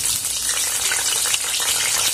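Halved potatoes just put into hot leftover oil in a kadai, frying with a steady hissing sizzle and fine crackles.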